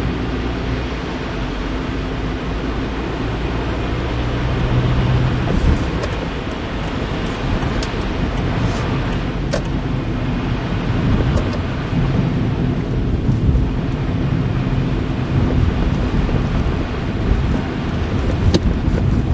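Steady in-cabin driving noise from a car: engine hum and tyre noise on a wet, snowy road. A few light ticks come through around the middle.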